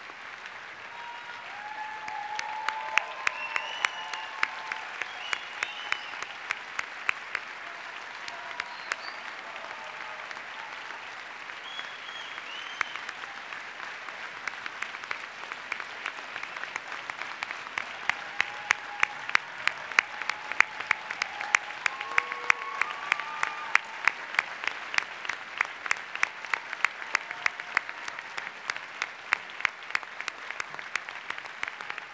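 Large audience applauding, with a few voices calling out over the clapping near the start and again partway through; the applause swells about eighteen seconds in.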